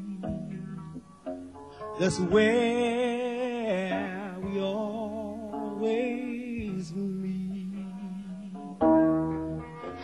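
Live soul ballad sung by male vocalists over guitar accompaniment. The lead voice holds long notes with a wide vibrato, with instrumental gaps between the phrases.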